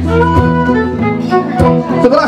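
Live acoustic folk music: a fiddle playing a melody of held notes over acoustic guitar, with a few plucked guitar notes.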